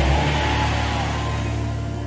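Background music from a church band: a chord held steadily for the whole moment, fading slightly, over a hiss of hall noise.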